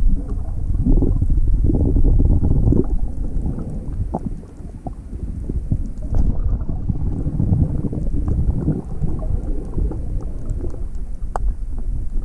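Underwater sound from an action camera held just below the surface: a loud, muffled low rumble of water moving against the housing, with scattered small clicks. It dips quieter about four seconds in.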